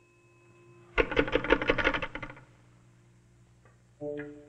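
Old wall-mounted crank telephone being worked: a rapid rattle of clicks for about a second and a half as the handset is tried on a dead line.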